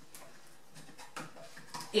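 A few faint plastic clicks and knocks as the lower front panel of a condenser tumble dryer is handled to get at the condenser unit.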